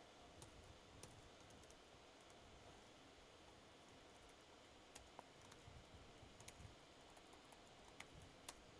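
Near silence with a few faint, scattered keystroke clicks from a computer keyboard as code is typed.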